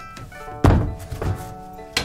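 Thuds and knocks from a sofa bed being handled: a heavy thud about half a second in, smaller knocks after it and a sharp knock near the end. Soft background music with held notes runs underneath.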